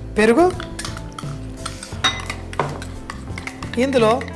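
A metal spoon scraping and clinking against glass bowls as a thick paste is spooned out of a small bowl into a mixing bowl of masala, with a few sharp clinks, the clearest about halfway through.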